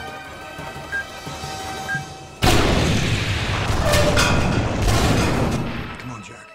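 A bomb's countdown timer beeps twice, a second apart, over tense score music; then, about two and a half seconds in, a gas plant explodes with a sudden loud blast that rumbles on for several seconds before fading.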